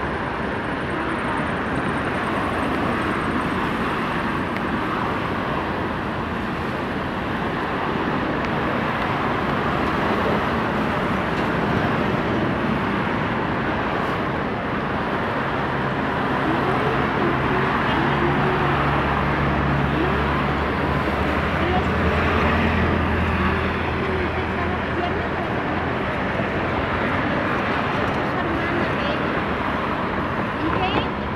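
Road traffic with many people talking indistinctly in the background; from about halfway through, a heavy vehicle's engine adds a low steady hum for several seconds.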